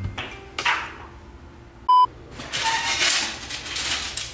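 A short, high electronic beep, lasting a fraction of a second, about halfway through. It is the loudest sound, set amid hissy rustling noise.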